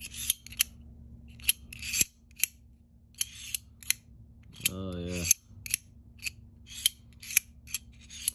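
A Reate Exo-M titanium gravity knife being flicked open and shut over and over: its double-edged Elmax blade slides out and back with short rasps, and locks with sharp metallic clicks, many of them in an irregular run.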